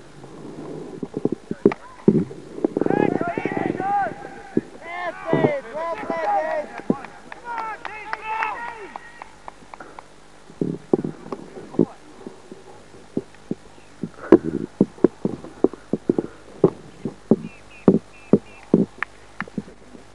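Several voices calling out at a distance, too far off for words to be made out, from about two seconds in until near the middle. Many short, irregular sharp clicks and knocks run throughout and come more often in the second half.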